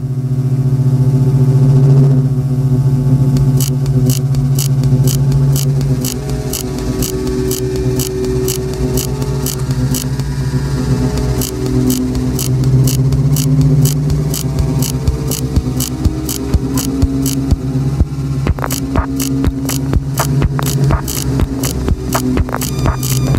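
Opening of an electronic dance track: a sustained low synth drone with held higher tones, joined about three seconds in by a regular high ticking percussion roughly twice a second. Near the end the percussion thickens and grows stronger.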